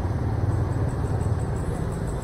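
Motor scooter engine running at low speed, creeping along in slow, queued traffic: a steady low rumble with a light haze of road noise above it.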